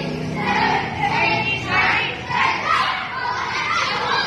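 A group of children's voices shouting together in short, repeated bursts about every half second, in time with a taekwondo kicking drill, echoing in a large open hall.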